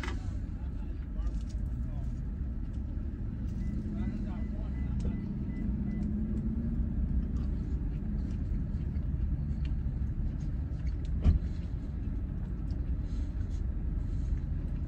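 Steady low rumble of a car idling, heard from inside the cabin, with one sharp click about eleven seconds in.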